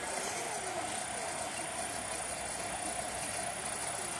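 Insects buzzing steadily outdoors, a continuous high-pitched chirring with a lower hum beneath it.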